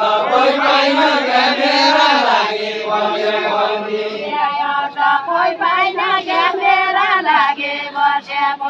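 A Deuda folk song sung together by a line of dancers, several voices at once with no instruments, the melody going on through the whole stretch.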